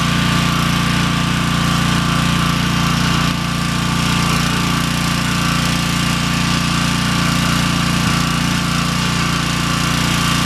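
Pressure washer running steadily with a constant low engine drone, its water jet hissing as it sprays the cart's wooden side boards.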